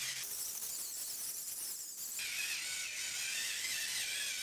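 Small battery-powered facial massage brush running with a steady high whir as its massage head rubs over the skin. The sound dulls for about two seconds near the start, then comes back fuller as the brush moves across the face.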